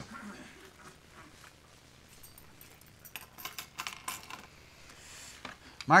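Faint rustling and light clicks of Bible pages being turned as the passage is looked up, mostly in a cluster from about three to four and a half seconds in, in an otherwise quiet room.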